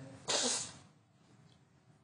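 A man blowing his nose once into a tissue: one short, noisy burst about a quarter of a second in, lasting about half a second.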